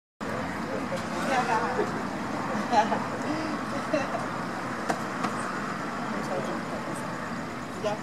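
Indistinct voices talking in short bursts over a steady background of vehicle noise.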